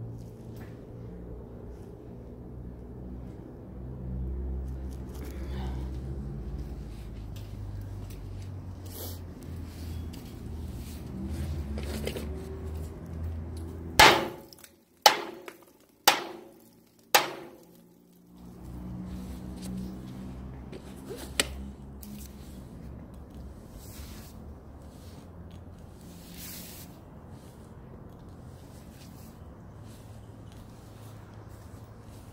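Four sharp knocks on a steel fire escape, about a second apart, each ringing briefly, over a steady low rumble.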